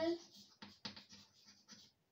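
Chalk writing on a blackboard: a run of short, faint scratchy strokes as words are written.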